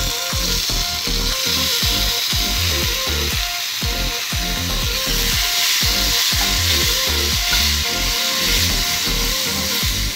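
Chopped tomatoes sizzling in hot oil in an aluminium kadai; the sizzle starts suddenly as they are tipped in and keeps going steadily as they are stirred. Background music with a low beat plays underneath.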